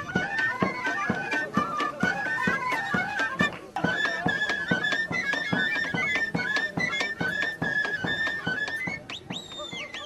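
Uyghur traditional dance music played live in the street: a high, ornamented melody over a steady drumbeat. The music breaks briefly a few seconds in and dies away about a second before the end.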